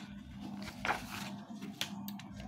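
Sheets of paper being moved and swapped, with two brief rustles, one about midway and one near the end, over a faint steady low hum.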